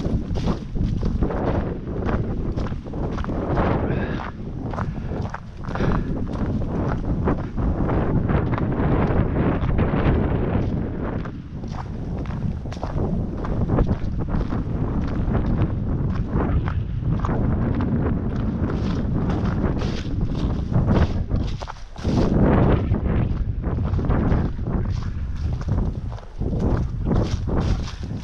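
Gusting wind buffeting the camera microphone in a heavy rumble that rises and falls, with footsteps on the dry leaf litter of a dirt trail.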